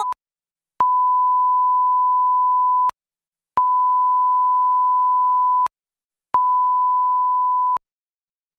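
Colour-bars test tone, the steady single-pitch beep of a TV 'technical difficulties' screen. It sounds as three long beeps of about two seconds each, the last one a little shorter, with short gaps between them.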